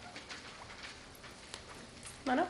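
Quiet meeting room between speakers: faint room tone with a few small scattered ticks and shuffles.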